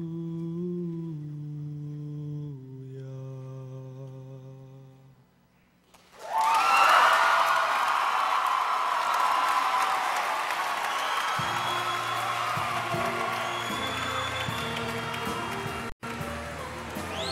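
Show choir voices humming a held a cappella chord that steps down in pitch twice and fades out about five seconds in. The audience then bursts into loud applause and cheering that carries on, and low held instrumental notes begin underneath about halfway through.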